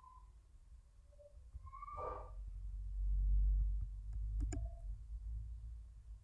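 Two quick computer-mouse clicks a little after four seconds in, over a low background rumble that swells about halfway through. A brief pitched sound about two seconds in, falling slightly in pitch.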